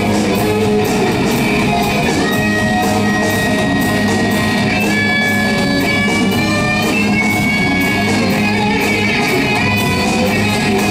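Live rock band playing: an electric guitar (a sunburst Stratocaster-style guitar) plays lead over drums. From about halfway through, the guitar holds long high notes.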